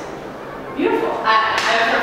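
A person's voice speaking after a brief lull of under a second.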